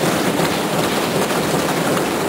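Members of Parliament thumping their desks in applause: a dense, steady patter of many hands with no break.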